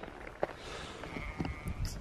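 Quiet outdoor background with a low rumble on the microphone and a single soft click about half a second in.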